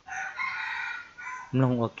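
A rooster crowing once, a single high call lasting just over a second.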